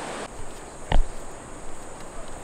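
Steady high-pitched buzz of crickets and other insects in tropical forest, with one sharp thump about a second in. A rush of surf noise cuts off abruptly just after the start.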